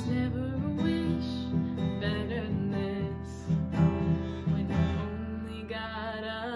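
Acoustic guitar strumming chords in an instrumental passage of a slow pop song.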